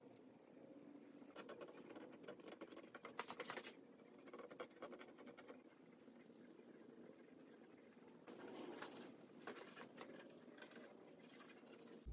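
Faint, rapid scratching of a brush spreading wood stain over pine boards, coming and going in a few spells.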